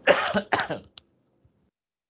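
A man coughing twice in quick succession to clear his throat, two short rough bursts with the first the louder.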